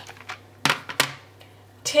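Two short, sharp clicks about a third of a second apart, then a voice starts speaking near the end.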